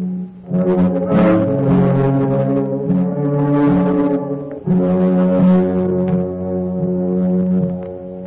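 Orchestral music led by brass, playing long held chords that change pitch; a new chord comes in about halfway through, and the music dies down near the end.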